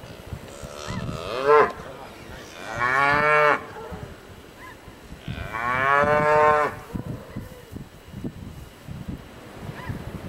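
Cattle mooing: three separate moos, the last one the longest.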